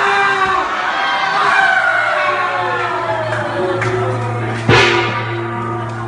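Several voices calling out long, drawn-out 'ah' and 'oh' shouts that slide down in pitch, over a steady low hum that comes in about two seconds in. A single loud thump near the end.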